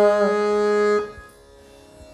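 Harmonium reeds sustaining a note, with a sung note fading out just after the start; the harmonium stops abruptly about a second in, leaving only faint room sound.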